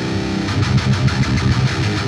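High-gain electric guitar played through a Monomyth-modded Marshall Silver Jubilee amp head into a Zilla 4x12 cabinet. A chord rings for about the first half-second, then a fast, low chugging riff.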